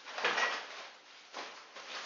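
Fabric of a Deuter child carrier backpack rustling and rubbing as it is handled, in two short bursts about a second apart.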